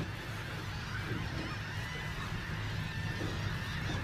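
Boat engine running, a steady low drone with a faint hiss of wind and water over it.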